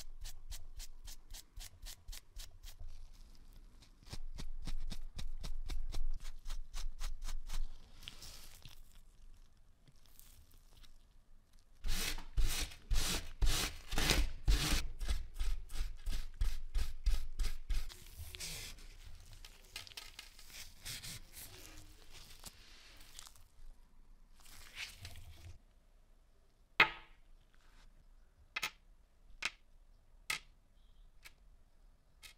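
Steel wool scrubbed back and forth against small brass lighter parts in quick rhythmic strokes, about four a second, polishing off rust and oxidation. The scrubbing comes in louder spells and then softer scratching, and a few sharp clicks come near the end.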